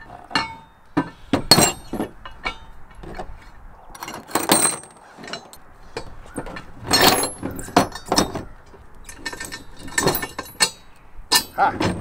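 Steel bolts, washers and bracket parts clinking and knocking against each other in irregular, short strikes as washers are worked by hand between the steel linkage and shank channel of an ATV implement lift.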